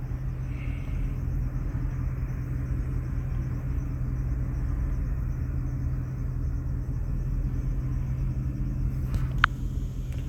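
A steady low rumble with a constant low hum, and one short sharp click near the end.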